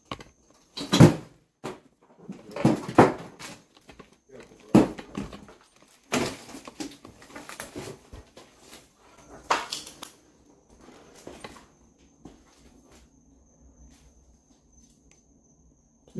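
Footsteps scuffing and crunching over a debris- and cardboard-strewn floor, a handful of separate steps with the loudest about a second in, dying away to faint shuffles near the end; a faint steady high whine runs underneath.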